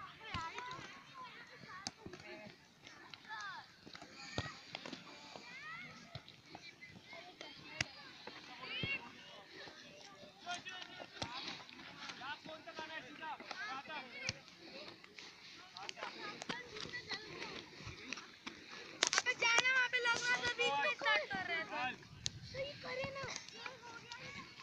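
Faint, overlapping voices of children calling and shouting, with scattered short knocks throughout; a louder burst of shouting comes about nineteen seconds in and lasts a couple of seconds.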